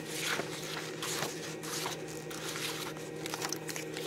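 Paper rustling and light handling clicks as spiral-notebook pages are turned, over a steady low hum.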